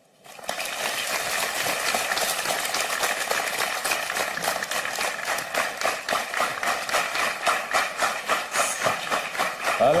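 Studio audience clapping steadily, starting about half a second in, with some voices among the crowd.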